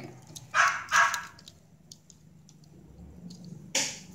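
A dog barking twice in quick succession, about half a second and a second in. Near the end comes one sharp click.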